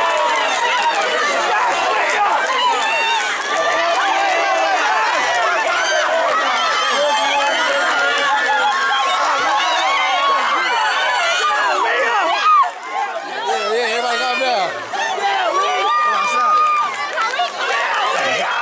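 Excited crowd of many voices screaming, shouting and cheering at once at close range, celebrating a win.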